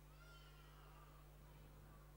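Near silence, with a few faint, high-pitched calls that rise and fall.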